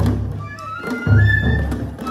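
Danjiri festival music: bamboo transverse flutes play a melody that steps upward, over heavy drum beats at the start and about a second in.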